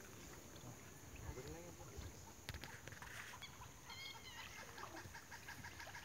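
Faint outdoor ambience with a few distant bird calls: one about a second in and a higher, wavering one around four seconds in.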